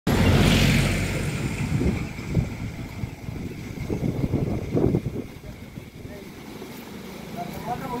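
Bricks being laid by hand: occasional short knocks of brick and trowel, with voices in the background. A low rumble is loudest in the first second.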